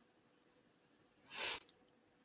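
Near silence, then, about a second and a half in, a man's short intake of breath.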